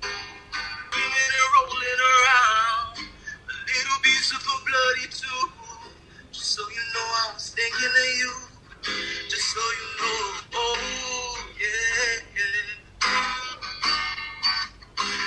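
A man singing a slow song with wavering held notes, played through a phone's speaker from a live stream.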